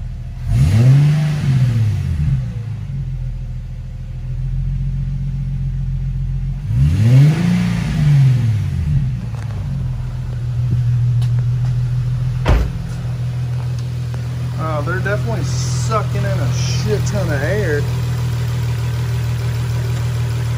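Infiniti G37's 3.7-litre V6, fitted with open cone air filters, idling and revved twice. Each rev rises and falls in pitch over about two seconds, the first near the start and the second about seven seconds in, and the engine then settles back to a steady idle.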